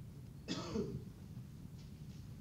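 A man's short throat noise, like a brief throat clear, about half a second in, over faint room hiss.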